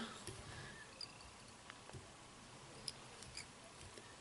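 Near silence broken by a few faint small clicks and ticks, the sharpest about three seconds in, from fingers handling the tying thread and the fly in the vise.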